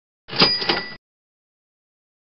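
Short transition sound effect marking the change to the next slide: two quick metallic strikes with a bright ringing tone, under a second long and cut off sharply.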